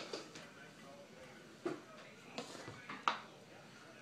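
Quiet room with a few faint, short knocks and clicks spread through it.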